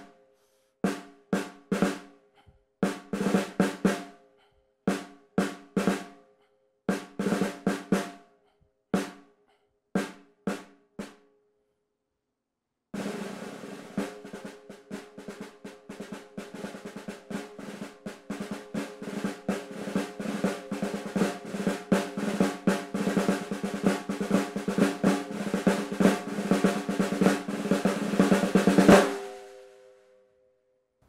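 Snare drum played with sticks: short rhythmic figures of quick strokes broken by brief pauses, then a long roll that starts soft, swells steadily to loud and stops abruptly near the end.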